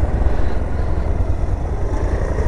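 Riding noise from a two-wheeler: a steady low rumble of wind on the microphone over the engine running at an even speed.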